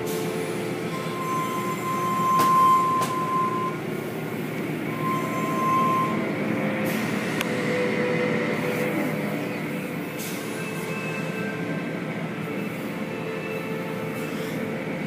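Automatic tunnel car wash machinery running: a steady mechanical noise from the conveyor, the spinning cloth brushes and the hanging cloth curtains working over the vehicles. Short high squeals come about a second in and again about five seconds in.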